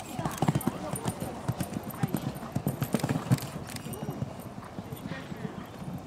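Hoofbeats of a horse cantering over a sand arena surface, coming down off a fence and carrying on around the course. The thudding is loudest in the first half and eases later on.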